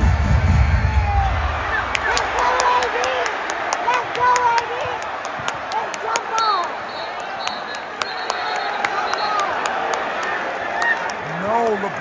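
Courtside sound of a live NBA game: a steady arena crowd din with many sharp knocks from the hardwood court and short sneaker squeaks as players scramble for a loose ball.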